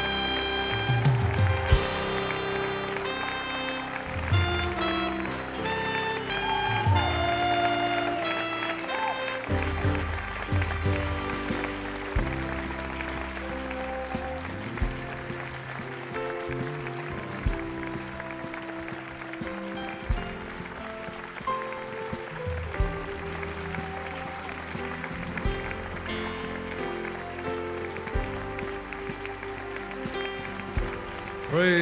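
Instrumental processional music with held chords and a deep drum hit about every two and a half seconds, over a large crowd applauding.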